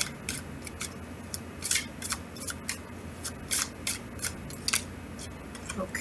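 Tarot cards being shuffled by hand before a card is drawn: an irregular run of short, sharp card snaps, about three a second.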